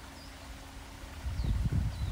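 Quiet outdoor background, then a low, irregular rumble on the microphone that starts about a second and a half in and grows louder.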